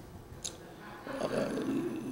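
A quiet pause with a short click about half a second in, then a man's faint, drawn-out 'uh' of hesitation from a little past one second.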